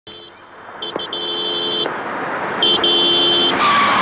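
Two-tone car horn honking in a run of short and long blasts: one toot, then several quick blasts running into a long one, then a short and a long blast. A rush of noise follows near the end.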